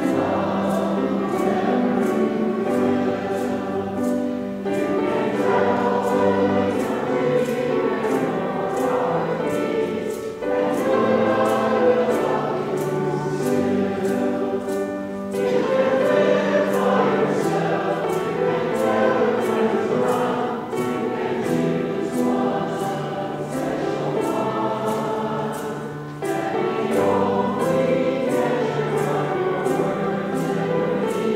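A congregation and choir singing a hymn together, in phrases with short breaks between them.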